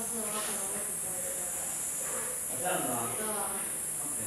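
A steady high-pitched hiss, with faint voices talking in the background.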